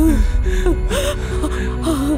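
A person crying, sobbing in short gasping catches, over background music with long held notes.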